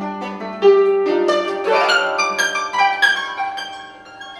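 Concert harp played with a thin wooden stick and the fingers on the strings: a quick flurry of ringing plucked and struck notes that gets loud about a second in and fades toward the end.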